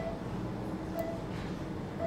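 Short, faint beeps about once a second from a patient monitor, over a steady low hum.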